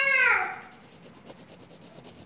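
A high-pitched voice-like call that ends about half a second in, dropping in pitch as it fades. Then faint rubbing of a hand over paper.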